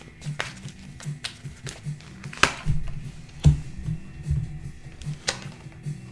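Soft background music with a pulsing low tone, with scattered sharp clicks and slaps of tarot cards being shuffled and laid down, the loudest about two and a half and three and a half seconds in.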